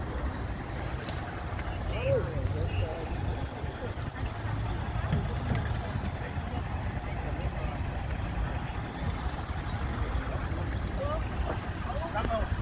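Faint, distant voices of people talking, over a steady low rumble.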